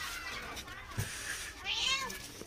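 A newborn kitten mewing once near the end, a thin, high-pitched cry, with a soft thump about a second in.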